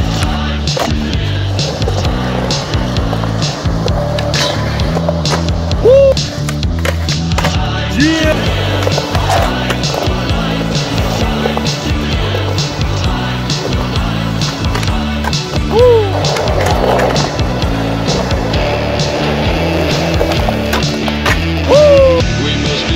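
Skateboard on concrete: wheels rolling and the board popping and landing in many sharp hits, the loudest about six seconds in, near sixteen seconds and at the end. Rock music with a steady beat plays underneath throughout.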